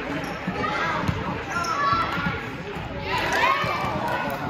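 Basketball bouncing on a hardwood gym floor during play, with voices shouting in the echoing gym.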